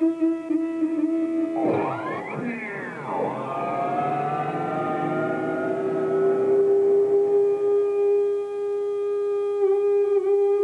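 Electric guitar with a tremolo bridge playing long, singing sustained notes: a held note, a burst of wild swooping pitch glides about two seconds in, then a single note that slowly bends upward and is held with a slight waver near the end.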